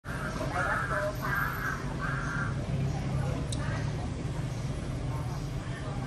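A crow cawing three times in quick succession, harsh calls of about half a second each. A steady low hum runs underneath.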